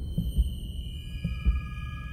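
Intro sting for a logo animation: deep rumbling thuds under a cluster of high held ringing tones that come in one after another.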